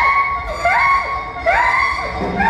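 Electroacoustic music for saxophone and electronically processed train sounds: a siren-like rising glide that levels off, repeated in overlapping copies about every 0.7 s, over a low rumble.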